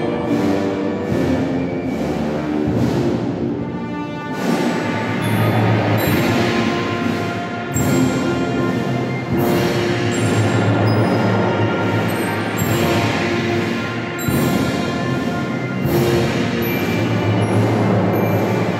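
A band plays slow, solemn processional music for a Holy Week procession: sustained chords with a regular percussion stroke about once a second.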